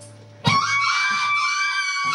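Free-improvised noise music: a quiet low drone, then about half a second in a sudden loud entry of a long, piercing high held note that sags slightly in pitch near the end, with electric guitar underneath.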